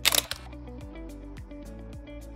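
A camera shutter sound effect, one short loud click at the start, over background music with a steady beat.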